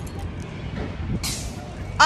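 City street ambience: a steady low rumble of traffic and wind on a handheld phone microphone, with a short hiss a little over a second in.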